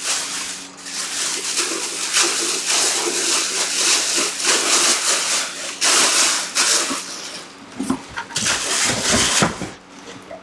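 A clear plastic bag crinkling and crackling as it is handled, dense for most of the time and thinning to a few separate crackles near the end.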